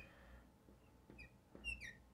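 Marker tip squeaking faintly on a glass lightboard while letters are written: a few short high chirps, the last one sliding down in pitch near the end.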